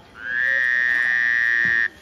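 A vehicle horn sounding once in a single long, steady honk that rises slightly in pitch at the start and cuts off abruptly after under two seconds.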